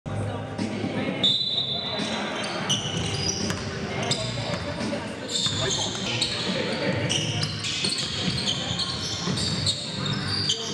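A pickup-style basketball game on a gym court: sneakers squeaking in many short, high chirps on the floor, the ball bouncing, and players' indistinct voices calling out.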